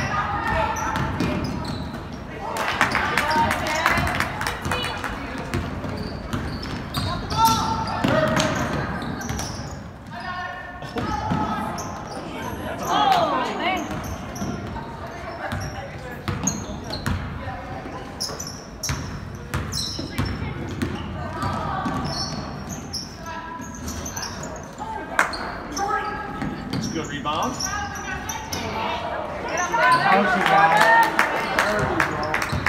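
Basketball dribbling and bouncing on a hardwood gym floor during play, with short sharp knocks scattered throughout, over indistinct voices of players and spectators echoing in the gym.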